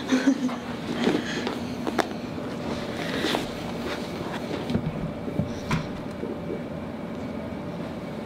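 A patient turning over and shifting on a padded chiropractic table: rustling and rubbing, with a few sharp clicks.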